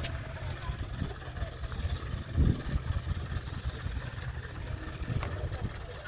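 Low, uneven rumble of vehicle engines, with crowd voices faintly behind it. There is a brief louder low thump about two and a half seconds in and a sharp click near the end.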